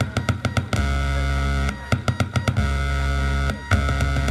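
Live electronic noise music from handmade DIY circuits run through a small mixer: a buzzing drone with many overtones cuts in and out in blocks of about a second, alternating with rapid stuttering clicks.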